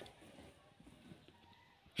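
Near silence: faint background noise with a few very soft ticks, in a pause between narration.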